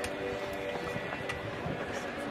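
Background crowd ambience: distant voices and faint music over a steady murmur, with no single loud event.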